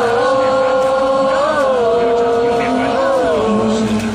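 Baseball cheer song over outdoor loudspeakers: a few long held notes, each a little lower than the last, with a short bend at each change.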